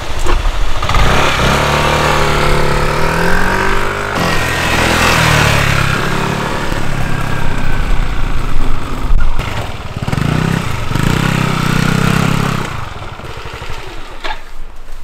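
Motor scooter engine pulling away and accelerating, its pitch climbing and falling several times as it rides off, then dying down near the end.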